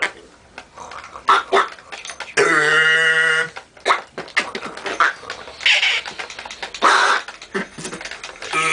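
Improvised mouth and breath sounds made into cupped hands: short, irregular sputters and clicks, broken about a third of the way in by one steady held tone lasting about a second.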